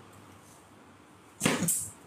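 A quiet pause, then about a second and a half in, a short whoosh of noise lasting about half a second.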